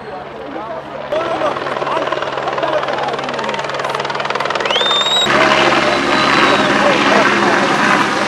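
A single-engine AS350-type light helicopter flying in low overhead, its rotor and engine sound growing louder, over a crowd of shouting voices. A shrill whistle rises to a high steady note about halfway through.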